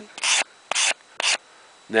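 Nicholson steel-bristle file card scrubbed across the teeth of a metal file in three quick scratchy strokes, about two a second, tearing brass pinning out of the teeth.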